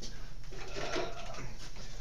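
Room tone with a steady low hum, and a brief, faint hesitant "uh" from a man about a second in.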